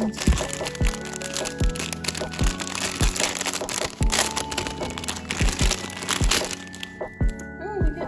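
Clear plastic packaging crinkling and crackling as a small ring binder in a plastic sleeve is handled and unwrapped; the crinkling stops near the end. Background music with a steady beat plays throughout.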